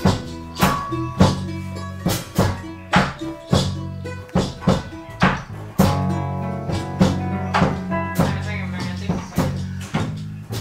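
Nylon-string acoustic guitar strummed in a steady rhythm, a chord struck about every 0.6 s and left ringing, with a chord change about halfway through.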